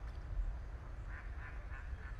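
A bird giving a quick series of about four short calls about a second in, over a steady low rumble.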